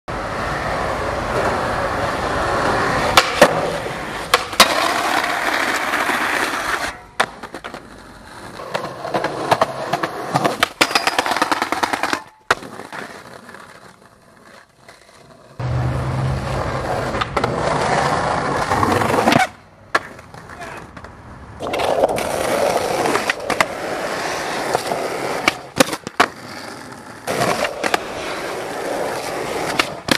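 Skateboard wheels rolling over concrete and pavement in several separate runs, broken by sharp pops and clacks of the board as tricks are popped and landed.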